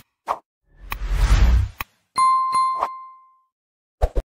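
Subscribe-button animation sound effects: two mouse clicks, a short rushing swoosh about a second in, then a notification-bell ding with a single ringing tone that fades out over about a second, struck with a few clicks.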